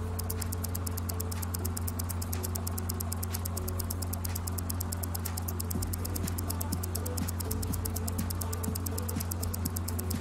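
Background music for a countdown: a steady low drone under fast, even ticking, with a few faint held notes.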